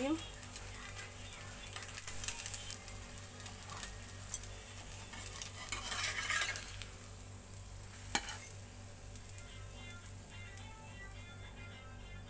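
Potato-cheese French toast sizzling in a frying pan, with a metal spatula scraping under it about six seconds in and a single sharp clink just after eight seconds as it is lifted out.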